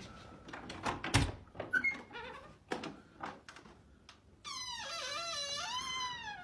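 A heavy thump about a second in and a few softer knocks, then from about four and a half seconds a long, wavering, high-pitched squeak.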